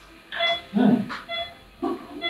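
Operating-theatre patient monitor giving its short pulse beeps, one per heartbeat, twice about a second apart. A louder, lower, uneven sound comes in around the middle.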